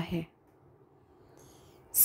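A woman's speaking voice ends a line of recited verse, followed by a pause of near silence with a faint breath just before the next line.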